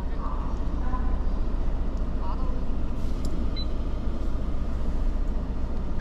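Ford F-150 Raptor pickup idling at a standstill, a steady low engine rumble heard from inside the cab, with faint voices in the background.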